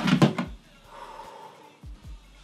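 Stacked black plastic planter pots being wrenched apart: a burst of plastic scraping and knocking in the first half second.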